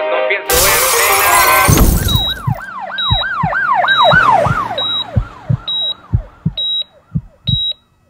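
The guitar music cuts off and a loud burst of noise follows. Then a siren wails in quick rising-and-falling cycles, fading away over several seconds, while a short high beep with a low thump repeats under it, a bit more than once a second.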